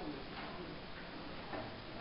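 A short pause between voices in a classroom: low room noise with faint murmuring and a few soft clicks.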